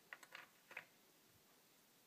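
Near silence with a few faint light clicks in the first second: long steel neck screws being set into the holes of a metal guitar neck plate.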